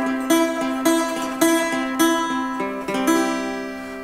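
Acoustic guitar playing an instrumental blues passage: single plucked notes about twice a second over a ringing bass note, dying away toward the end.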